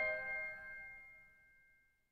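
The final chord of a bass clarinet and piano piece dying away: the piano's struck strings ring on and fade out about a second in, with a few high notes lingering faintly after.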